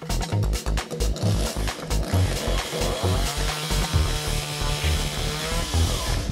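Electronic music with a steady beat of about two per second. Under it, from about two seconds in, a chainsaw runs and cuts dead wood with a wavering whine, cutting off abruptly at the end.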